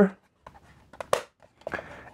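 Plastic cover of a Phomemo D30 label printer being pressed shut over the freshly loaded label roll: a couple of small, sharp clicks about a second in.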